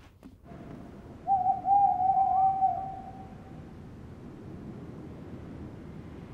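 An owl hooting: one long, steady hoot lasting about two seconds, over a faint background hiss.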